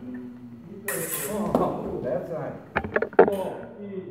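Fencing sabre blades clashing: a quick run of four or five sharp metallic clicks a little under three seconds in, over people talking.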